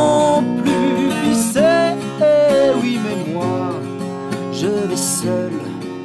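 Solo acoustic punk song: an acoustic guitar strummed steadily under a sung melody line.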